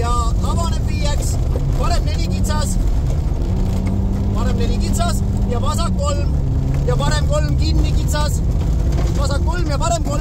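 Rally car's engine running at speed on a gravel stage, heard from inside the cabin over a heavy rumble of tyres on gravel. The engine note holds steady, then drops about six seconds in.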